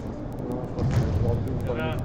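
Players' voices calling across a reverberant indoor five-a-side hall over a low rumble of hall noise, with one voice raised shortly before the end.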